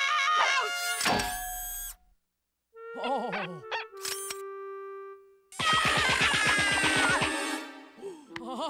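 Cartoon score with slapstick sound effects, in three short bursts separated by brief pauses. The last burst carries a fast run of sharp hits, about a dozen a second, that stops shortly before the end.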